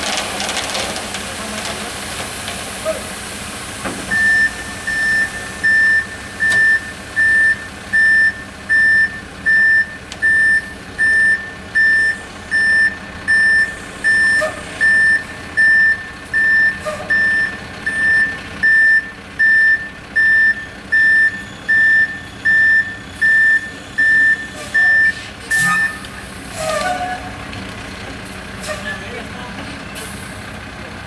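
Truck reversing alarm beeping steadily about once a second for some twenty seconds, starting a few seconds in and stopping near the end, over a running truck engine.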